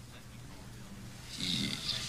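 Quiet room tone, then about one and a half seconds in a soft, hissy breath-like sound from a person.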